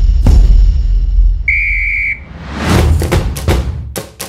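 Channel outro jingle: a heavy low bass boom, then a single whistle blast held for under a second about a second and a half in, followed by a rising whoosh that leads into quick drum hits.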